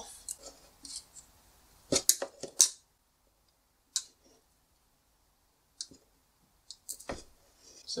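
Hand wire cutters snipping through Cat5e cable and its copper conductors. There is a quick run of about four sharp snips around two seconds in, one more near four seconds, and a few lighter clicks around six to seven seconds.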